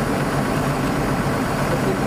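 Diesel engine of a Hyundai 210 crawler excavator idling, a steady, even hum.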